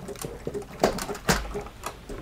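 Light clicks and knocks from a 3D-printed plastic pendulum clock being handled and set on its wall hooks, mixed with the ticking of its escapement. The clicks are irregularly spaced, with two sharper knocks around the middle.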